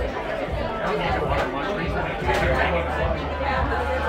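Indistinct chatter of many people talking at once in a busy bar, with no single voice standing out.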